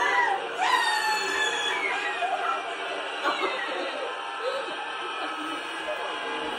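Several high-pitched voices shrieking and laughing excitedly over one another, loudest in the first couple of seconds, then settling to quieter chatter.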